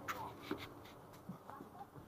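Light footsteps and rustling as someone climbs the steps into a coach and moves along the aisle: a few soft knocks scattered through, over a faint steady hum.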